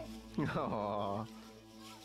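A person laughing: one drawn-out laugh, falling in pitch, about half a second in.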